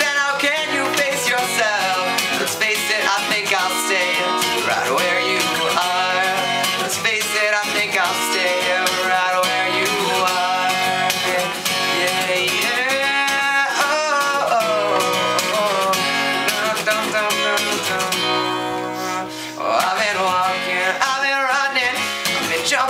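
Cutaway acoustic guitar strummed steadily, with a man singing along, with a brief softer moment near the end.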